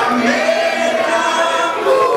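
A group of voices singing together, several people at once, like a crowd of partygoers singing along.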